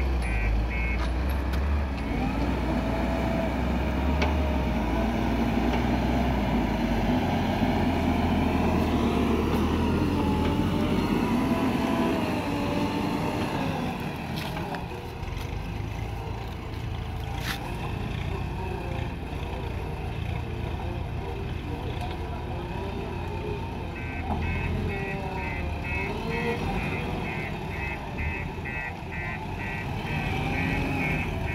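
JCB 3DX backhoe loader's diesel engine running and revving up and down as it works the loader arm. Its reversing alarm beeps steadily from a little past two-thirds of the way through.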